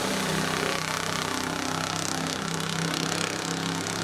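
A restored wooden mahogany speedboat's engine running at speed, a steady drone with slight shifts in pitch, over the hiss of water and spray from the hull.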